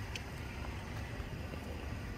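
Steady low rumble of outdoor background noise, with no distinct event.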